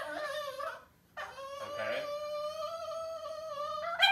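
Cavalier King Charles spaniel whining in excitement at its owner's homecoming: a short wavering whine, then one long, steady, high-pitched whine lasting nearly three seconds.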